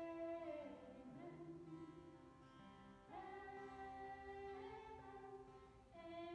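Faint singing of a chapel song over strummed acoustic guitar, in long held notes that slide down to a new note about a second in and up to another about three seconds in.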